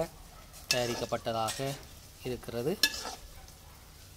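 A metal spoon stirring and clinking in a stainless-steel bowl of batter, with a sharp clink and brief ring from the bowl about three seconds in.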